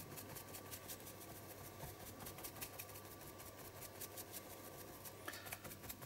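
Faint, rapid soft taps of a small sponge dabbing paint onto the paper edge of an art journal page, over a low steady hum.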